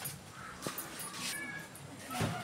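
Faint handling of plastic rulers and a tape measure on paper, with one light tap about a third of the way in. A short, faint animal call comes about three-quarters of the way through.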